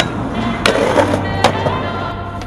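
Skateboard clacking onto and grinding along a metal handrail: sharp clacks near the start, about two-thirds of a second in and about a second and a half in, with a rough scraping stretch in between.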